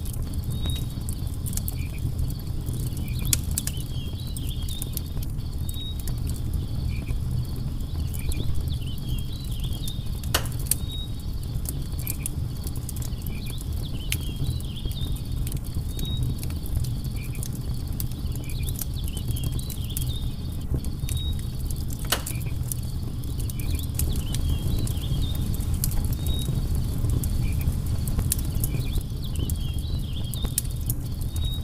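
Wood campfire burning with a steady low rumble of flame and frequent small crackles, with two sharper pops about ten and twenty-two seconds in. Faint short insect chirps repeat in the background.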